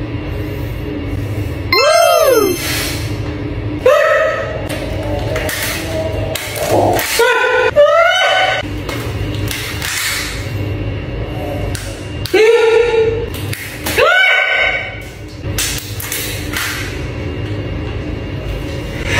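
Rubber bands being stretched and snapped one by one around a watermelon, short snaps under background music. About six loud swooping tones that rise and then fall come through over the top.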